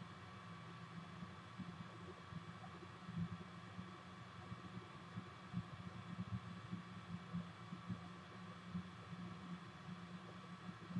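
Quiet room tone: a low steady hum with light hiss and a few faint, scattered small ticks.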